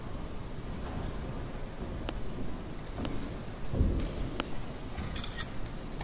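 Low background noise of a large hall, with a few faint clicks and a dull low bump just past the middle.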